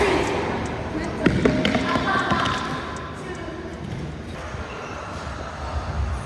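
A few sharp squash-ball impacts, the racket hitting the ball and the ball striking the court wall and wooden floor, in the first two seconds or so, with voices in the background.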